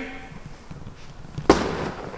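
A single sharp slap about one and a half seconds in: hands punching into a padded stand-up tackling dummy, the "shock" strike a defensive lineman uses to stop a blocker.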